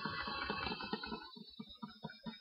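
Handling noise from a paper-covered box: paper rustling and light taps and clicks that are dense at first, then thin out to a few scattered ticks.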